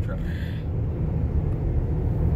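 Steady low rumble of a van driving along a road, heard from inside the cabin.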